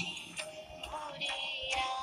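Recorded Bengali song playing: a singing voice holding a slow, gliding melody over instrumental accompaniment.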